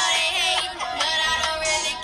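A song playing back: a young girl's melodic vocal line over a full backing track.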